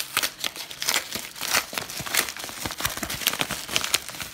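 A padded paper mailer envelope crinkling as it is torn open by hand: a rapid, irregular run of crackles.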